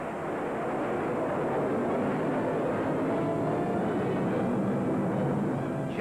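Jet aircraft engine roar: a steady rushing noise that swells slightly over the first couple of seconds and then holds.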